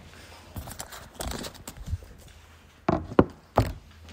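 A run of thumps and knocks, soft at first, then three sharp, loud knocks in the last second and a half.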